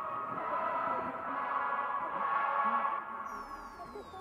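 Ambient electronic music intro: a sustained synth chord swells and then fades about three seconds in, as a cluster of high tones begins gliding downward in pitch.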